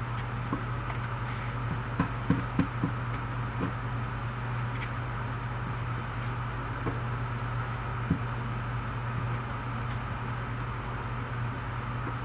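A few small sharp clicks from a hand cutting tool being squeezed, four close together about two to three seconds in and another about eight seconds in, over a steady low hum.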